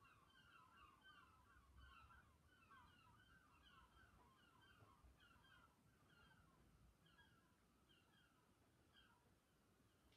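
Near silence with faint bird chirping: short falling notes repeated about twice a second.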